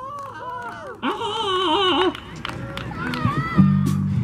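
High, wavering voices, one held with a fast vibrato for about a second. A low steady note comes in abruptly about three and a half seconds in.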